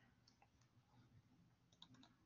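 Near silence: room tone, with a few faint clicks, a small cluster of them just before the end.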